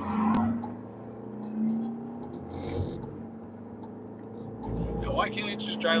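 Steady drone of a car's engine and tyres heard from inside the cabin while driving, with a low rumble swelling shortly before a voice comes in near the end.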